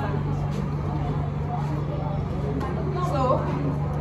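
Steady low mechanical hum under faint voices of people close by, with a woman's voice speaking near the end.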